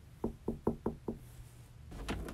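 Five quick, evenly spaced knocks on a door, about five a second.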